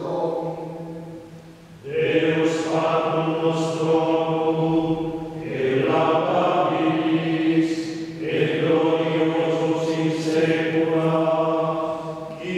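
Voices chanting Ambrosian chant on nearly level notes, in drawn-out phrases with short breaks between them.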